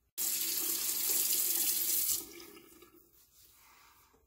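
Tap water running into a sink, stopping about two seconds in and tapering off over the next second.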